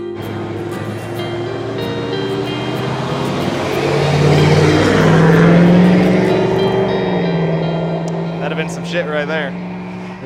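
A large truck passing close by on a highway, its engine and tyre noise building to a peak about five or six seconds in, then fading as it moves away. A man's voice comes in near the end.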